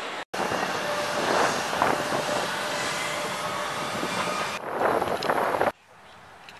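Steady vehicle noise inside a crowded airport apron shuttle bus, with a faint steady tone under it. It cuts off suddenly near the end.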